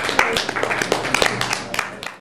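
Small audience clapping after a song, with some voices among the claps, fading out near the end.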